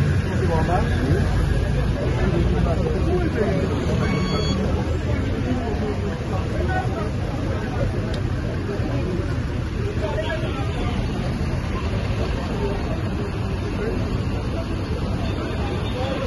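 Engines of armored vehicles and a pickup truck running close by as a steady low rumble, with people's voices talking over it.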